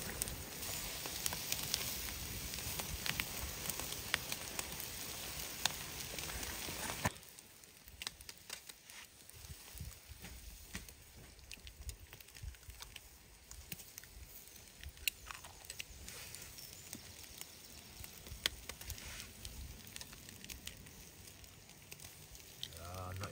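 Meat sizzling over an open wood fire, with the fire crackling in sharp pops. About seven seconds in the steady sizzle drops away abruptly, leaving quieter, scattered crackles.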